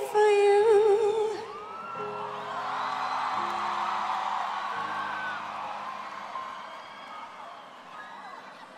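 A female pop singer holds a final sung note with wide vibrato over a live band, and it ends about a second and a half in. A large festival crowd then cheers over sustained keyboard chords that change a few times, and the cheering slowly fades.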